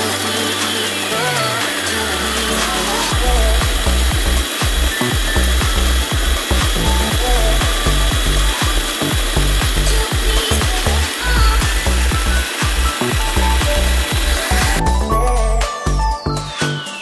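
Electric food processor running, its blades chopping red chilies and garlic, with a steady motor noise and the churning of the chunky mix. It stops abruptly near the end, leaving background music.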